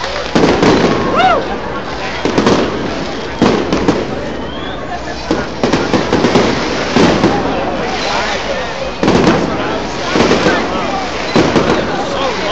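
Aerial fireworks bursting: about eight loud booms, one every second or two, with crowd voices between them.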